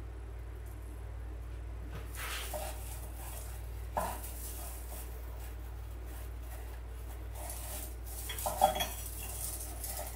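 Rustling and crackling of artificial pine sprays being handled and pushed into an artificial pine candle ring, with a sharp click about four seconds in and a louder knock near the end, over a steady low hum.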